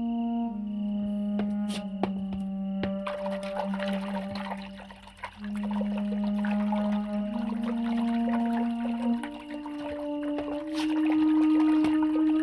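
Soft background music of long held notes that step slowly in pitch. From about three seconds in, water runs steadily from an outdoor tap as a man washes his hands under it.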